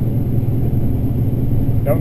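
Combine harvester running while harvesting corn, heard from inside the cab as a steady low drone.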